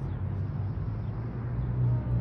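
Low, steady machine hum, growing louder near the end.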